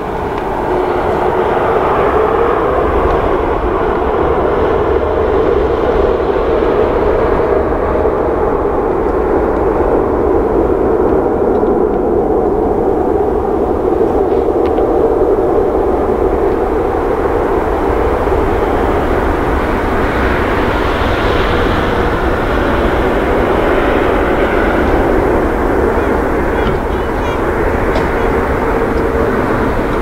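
Boeing 787-9 twin jet engines spooling up to take-off thrust, rising over the first couple of seconds, then a steady loud jet noise as the airliner rolls down the runway.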